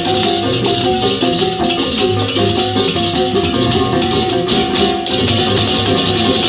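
Background music with a shaker rattling throughout and a melody of short repeated notes.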